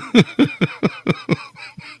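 A man laughing hard: a run of about nine rhythmic 'ha' bursts, four or five a second, each dropping in pitch and fading toward the end.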